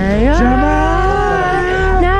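A person's voice singing one long, drawn-out note that slides up at the start and then wavers, over a low steady hum.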